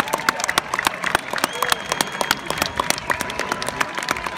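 A crowd clapping, the claps coming thick and irregular, with voices underneath and a few thin steady tones.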